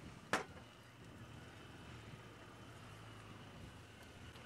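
Open safari vehicle's engine running with a low, steady hum as it drives slowly along a dirt track. A single sharp click sounds about a third of a second in.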